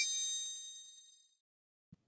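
A single bright chime, a logo-sting sound effect, struck once and ringing away over about a second. A faint click near the end.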